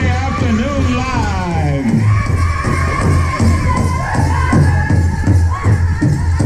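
Pow wow drum group singing a Grand Entry song: a chorus of voices in falling melodic lines over a steady, even beat on a large shared hand drum.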